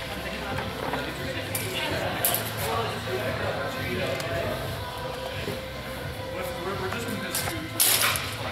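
Background music and voices echoing in a large hall, with a few sharp clacks as the fencers' longswords meet; the loudest comes just before the end.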